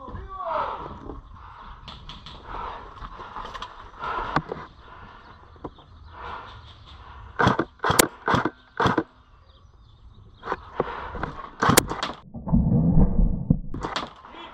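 Airsoft electric rifle (ICS CXP-APE) firing about five single shots in quick succession, each a sharp crack, spread over about a second and a half past the middle. Another sharp crack follows a few seconds later, then a loud low rumble near the end.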